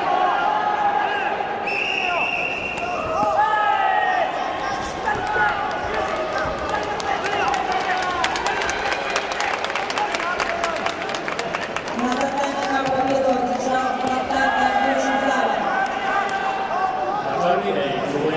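Several voices shouting and calling out over a full-contact karate bout in a large hall, with a quick run of sharp smacks and thuds, strikes landing on the body, from about six to eleven seconds in.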